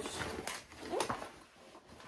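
Rustling and scraping of a nylon carry bag as a coil of heavy 0-gauge jumper cables is pulled out of it. There is a louder rustle at the start and another about a second in.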